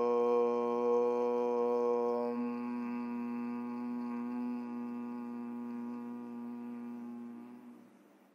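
A man chanting one long Om on a single steady pitch. The open 'o' gives way to a closed-mouth hum about two seconds in, and the hum fades out near the end.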